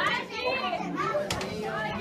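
Children's excited voices mixed with adult chatter as kids play a game in a room, with a short sharp click a little past halfway.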